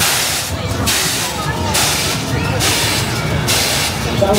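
Fairground spinning ride letting out a run of loud hissing bursts, several in a few seconds, each under a second long with short breaks between.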